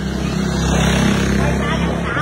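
A motorbike engine passing close by, its low hum swelling to a peak about halfway through and easing off as it rides away.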